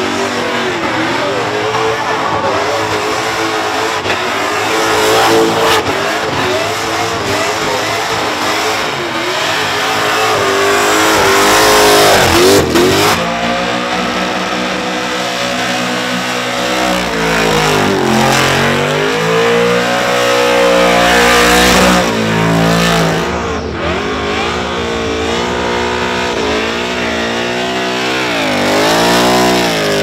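Several burnout cars in turn, engines revving hard with pitch repeatedly climbing and dropping as the drivers work the throttle, over the hiss of tyres spinning on the pad.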